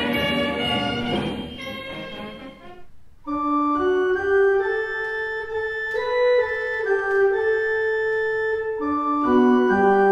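Organ music: a full chord dies away over the first three seconds, then after a brief pause slow, held organ chords begin and move from one chord to the next every second or two.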